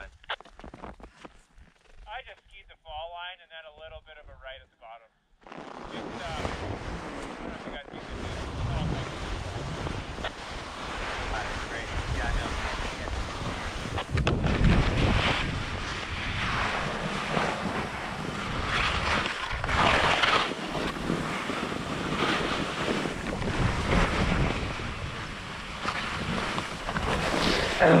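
Skis sliding and scraping down steep snow, with wind rushing over the microphone. The sound starts about five seconds in and grows louder as the descent speeds up.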